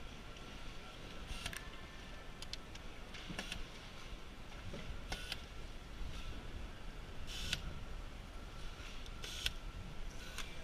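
Assembly-line factory noise: a steady low hum with short, sharp hissing or clicking bursts every second or two.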